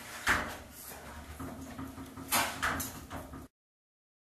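Glass shower-enclosure panel slid along its metal track: a short rolling swish about a third of a second in and two more about two seconds later. The sound then cuts off abruptly.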